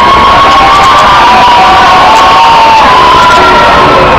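A large group of young children cheering and shouting together, loud and sustained.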